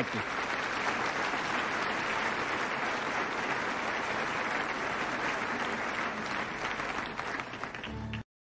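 Large seated audience applauding steadily, a dense sustained clapping from many hands.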